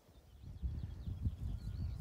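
Wind buffeting the microphone: an uneven low rumble that comes up about a third of a second in. Faint twittering of small birds sits high above it.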